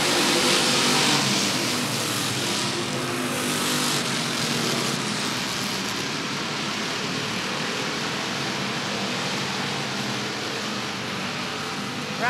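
A pack of short-track stock cars racing around an asphalt oval, their engines running hard together. The sound is loudest in the first few seconds as the cars go by, then settles to a steady, slightly quieter drone.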